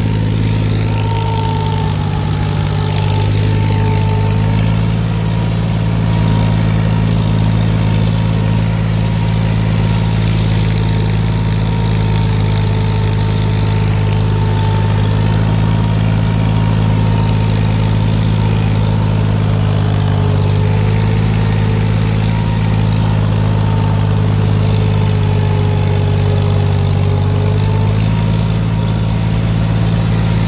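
Diesel tractor engines running steadily under load while pulling cultivators: the John Deere 5042D's three-cylinder engine close by, with the Mahindra 575 DI working alongside.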